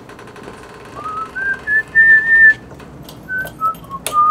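A person whistling a tune in clear, pure notes. The notes rise in steps to a held high note, then shorter notes step down.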